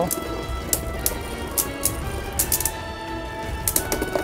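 Beyblade Burst spinning tops clashing in a plastic stadium: several sharp, irregular clacks as they collide, over steady background music.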